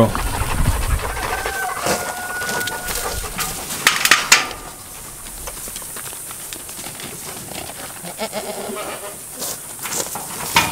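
Goats bleating, with a short cluster of sharp clicks about four seconds in.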